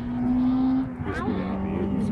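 Rally car engine heard at a distance, holding a steady high note that drops in pitch about a second in, with spectators' voices briefly over it.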